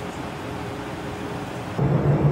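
Steady low rumble and hiss of equipment and ventilation noise in a control room, with a faint steady tone. Near the end it abruptly gets louder and deeper, becoming a heavy low drone.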